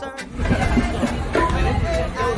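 Band music cuts off abruptly, then a murmur of people chatting over a steady low background rumble, with a few fragments of nearby voices.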